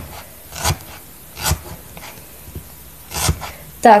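A felting needle stabbing through alpaca wool into a foam pad: a few separate soft pokes, unevenly spaced about a second apart, with the foam heard as the needle goes in.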